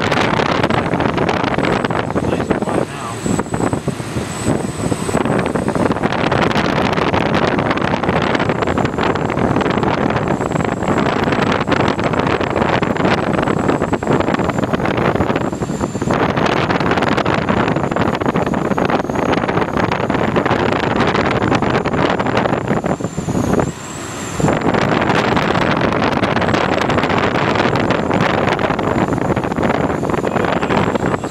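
Steady, loud rush of air past an unpowered glider in flight, with a thin, high, wavering whistle above it. The rush drops briefly twice, a few seconds in and again about three-quarters of the way through.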